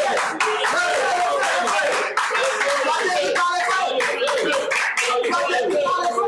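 A congregation praying aloud all at once, many voices overlapping, with hands clapping throughout.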